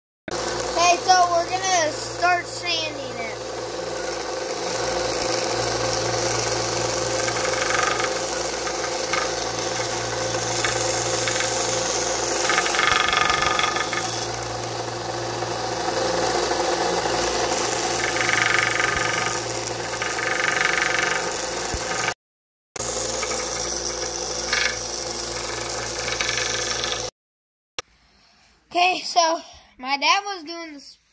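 Benchtop sander with a vertical sanding belt running steadily with a hum, while a pine swim-bait blank is sanded against the belt, giving a few brief rasping spells. The sound breaks off briefly twice near the end.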